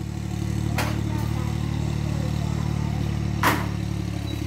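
Iseki TS2810 compact tractor's diesel engine running steadily under load as it works a flooded rice paddy on cage wheels. Two brief sharp noises cut in, about a second in and near the end.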